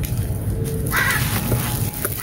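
Gritty red dirt blocks crumbling and crunching as hands break them apart, with a single short, harsh bird call about a second in.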